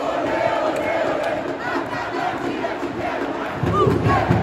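A large football crowd chanting together in the stands, many voices holding a sung line in unison. It grows louder near the end.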